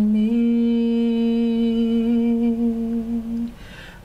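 A woman singing unaccompanied, humming one long low steady note for about three and a half seconds, then breaking off briefly near the end.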